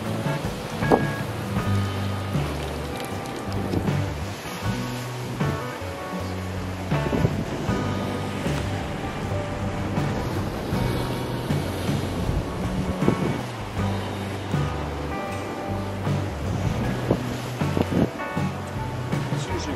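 Background music with a steady, changing bass line, over a noisy wash of wind and breaking waves.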